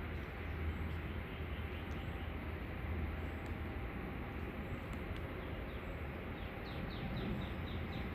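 Steady outdoor background noise with a low hum, and near the end a short rapid run of high, falling chirps.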